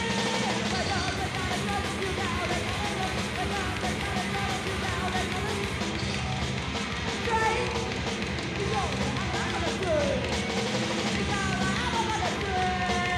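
Punk rock band playing live on electric guitars, with bass and drums, in a continuous loud song.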